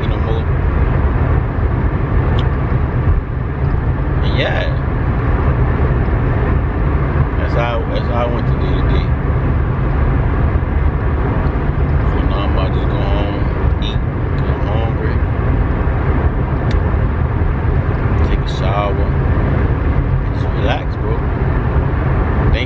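Steady low engine and road rumble heard from inside a moving vehicle's cabin.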